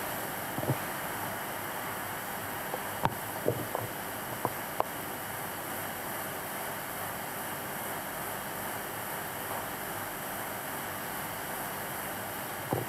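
Steady hiss of studio room tone and recording noise, with a few brief faint clicks in the first five seconds.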